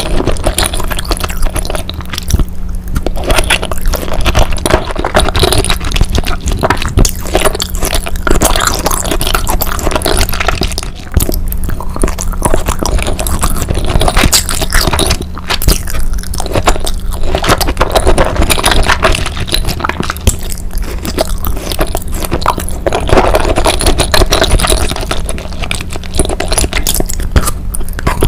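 Close-miked chewing of raw salmon sashimi and rice: continuous wet mouth clicks and squelches, loud throughout.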